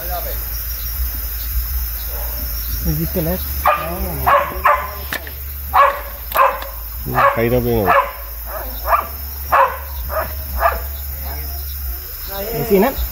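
A dog barking repeatedly in quick runs of short barks, starting a few seconds in and going on until near the end.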